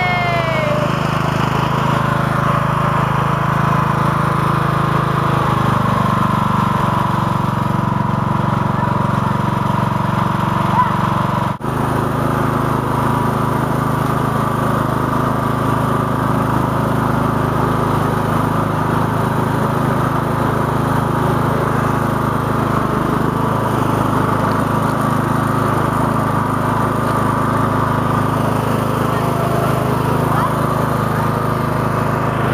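Lawn tractor with hydrostatic transmission, its small engine running steadily as it drives. There is one brief dropout in the sound a little before halfway.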